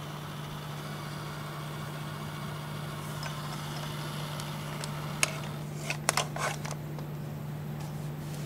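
Steady low machine hum at one unchanging pitch, with a few short clicks about five to six seconds in.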